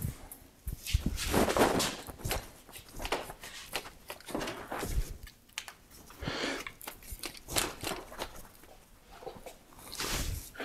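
Recumbent trike drivetrain worked by hand on a repair stand: the chain running and rattling over the sprockets, with irregular clicks as it is shifted into the largest chainring and largest rear cog. In that combination the chain is pulled close to its limit, with the rear derailleur nearly maxed out.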